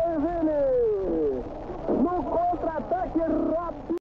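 A football broadcast commentator's voice calling out in long, drawn-out tones. One call slides steadily down in pitch over about a second and a half; after a brief dip, shorter wavering calls follow.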